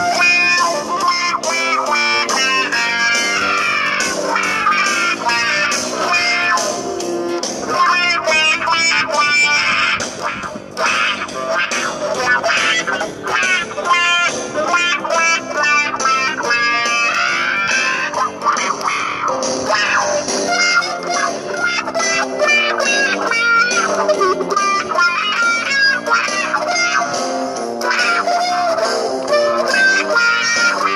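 Washburn Stratocaster-style electric guitar played through a Zoom effects unit, picking a blues shuffle with a plectrum cut from a coffee cup. The notes run continuously, with a brief dip about ten seconds in.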